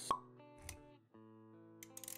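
Intro sound effects over background music: a short blip just after the start, then a brief low thud under held music notes, which break off about a second in and come back at once.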